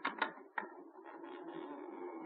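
Radio-play sound effect of a door being opened: a few sharp clicks of the latch in the first half second, then a faint steady background hum.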